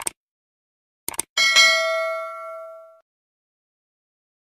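Subscribe-button animation sound effect: a short click, two more quick clicks about a second in, then a bright bell ding that rings with several tones and fades out by about three seconds in.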